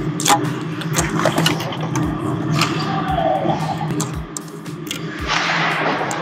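Ice hockey play on an indoor rink: skates and sticks on the ice with a short scrape of ice near the end, over a steady low hum and a soft thump about once a second.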